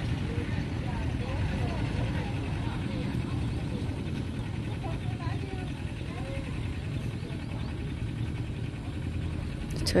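Faint, distant voices of a group of field workers talking and calling to each other, over a steady low rumble.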